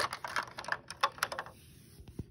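Rapid light clicks and taps of hard toy parts knocking together as a hand works a toy dollhouse's elevator and the figure inside it. They stop about one and a half seconds in.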